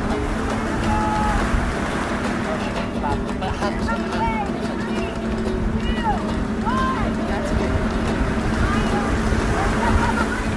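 Steady rush of sea surf breaking against rocks, with wind on the microphone, and scattered faint voices over it.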